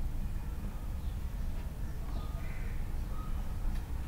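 Steady low background rumble of a room, with a faint short call about two seconds in.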